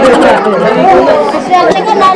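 A group of voices, children's among them, talking and calling out over each other at a loud, steady level.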